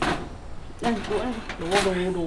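People's voices in short wordless utterances, one drawn out near the end, with a brief knock or clatter right at the start.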